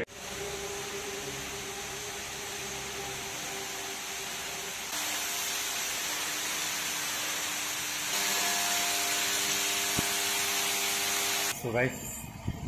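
Water from an ornamental fountain falling and splashing, a steady hiss. It gets louder in two steps, about five and eight seconds in.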